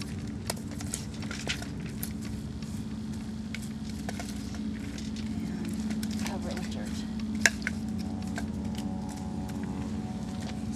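Small campfire being knocked apart with sticks: scattered crackles and the knock and scrape of sticks on burning wood, with one sharp snap about seven and a half seconds in, over a steady low hum.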